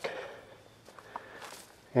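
Faint footsteps on a forest trail's leaf litter, with a couple of light ticks about a second in.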